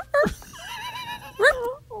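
People laughing, with a drawn-out, wavering laugh through the middle.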